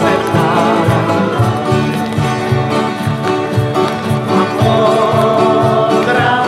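Steel-string acoustic guitars strummed in a steady rhythm with voices singing along: a Czech tramp/country song played live.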